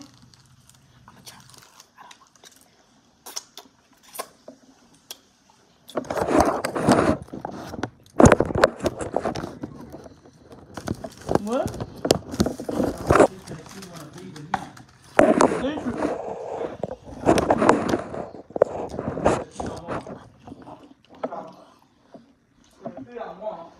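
Indistinct talking that starts about six seconds in and runs in loud, broken phrases, after a few seconds of quiet with scattered small clicks.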